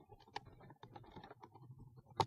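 Faint, scattered small clicks and ticks of hand work on wiring inside an electrical control panel: wire ends and a screwdriver being handled at the terminal block.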